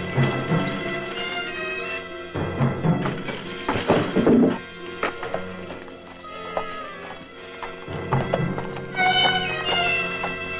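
Background music score over a horse neighing and its hooves clopping, with a louder, noisier stretch about four seconds in.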